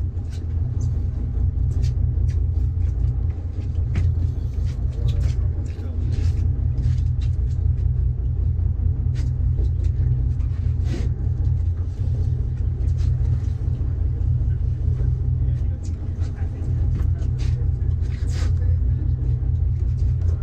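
A fishing boat's engine running with a steady low rumble, with indistinct voices and scattered sharp clicks and knocks over it.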